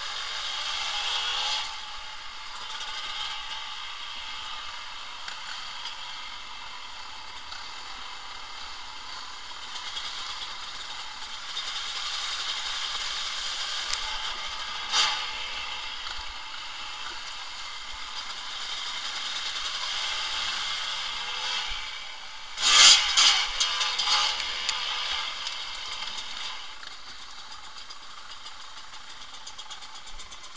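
Trail motorcycle riding over a rough, wet, stony track: running engine with steady rattling and clatter from the bike. A sharp knock comes about halfway through, and a loud burst of clattering impacts comes about three quarters of the way in.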